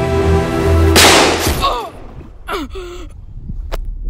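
Background music with sustained tones, cut off about a second in by a single loud revolver shot that rings away over most of a second. A few short pained vocal gasps follow.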